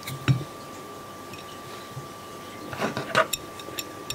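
Light metallic clicks and clinks from handling the fly-tying vise and its tools: one sharp click about a quarter second in and a small cluster around three seconds, over a faint steady hum.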